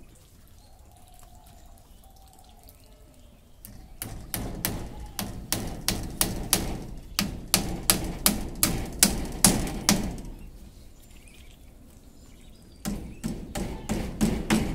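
Small hammer striking split bamboo slats against a bamboo crossbar: a run of sharp knocks about three a second from about four seconds in to about ten seconds, then a pause and more knocks near the end.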